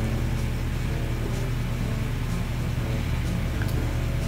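A steady low droning hum made of several held low tones, even in loudness throughout.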